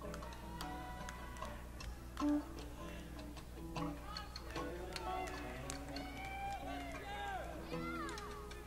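Electric guitar being tuned between songs, heard from the audience: the same single note is plucked several times, with scattered clicks, and crowd chatter rises over it in the second half.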